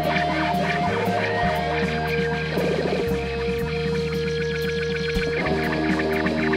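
Rock band playing live, an instrumental passage with no singing: a bass line and drums keeping a steady cymbal beat, about two strokes a second, under long held notes.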